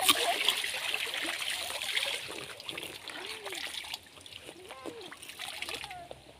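Water splashing and dripping as clothes are wrung out and rinsed by hand in a plastic basin of water, busiest in the first two to three seconds and quieter after.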